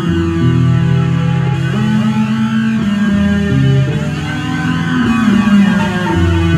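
Headless electric bass played solo through effects: sustained low notes that change pitch every second or so, with a slow sweeping swirl over the upper tones.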